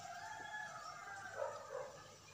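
A rooster crowing: one long crow lasting nearly two seconds, dropping in pitch toward the end.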